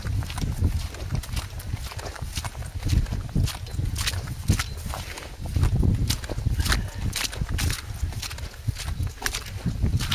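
Footsteps at a steady walking pace across wet grass, slush and patches of snow, with a low wind rumble on the microphone.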